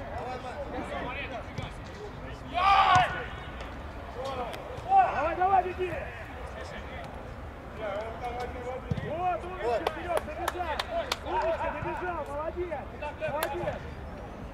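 Football players shouting to each other during play, with two loud shouts a few seconds apart early on. Over the last few seconds come a string of sharp smacks of the ball being kicked.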